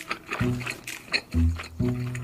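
Background music of short, separate pitched notes, a new note starting about every half second.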